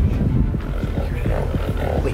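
Low, pig-like snorting over tense background music that has a steady low drone and a quick, even pulse.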